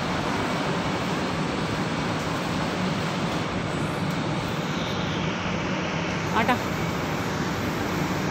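Steady hum and hiss of supermarket room noise, with a brief high-pitched sound about six and a half seconds in.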